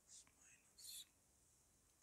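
Near silence, with faint whispered muttering: a soft breathy sound near the start and another, slightly louder, about a second in.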